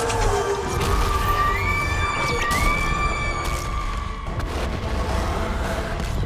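Dramatic sci-fi TV soundtrack: held score tones over a continuous deep rumble, with a few booming hits and two short rising swells near the middle.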